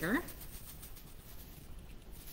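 Granulated sugar being poured slowly from a plastic bag into a measuring cup: a faint, soft grainy hiss with light crinkling of the plastic.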